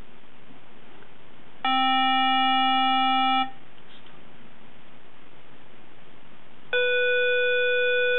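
Tempo Master metronome app's electronic reference pitch playing through the iPhone speaker as two separate steady tones of about two seconds each. A lower C sounds first, and a few seconds later a higher B.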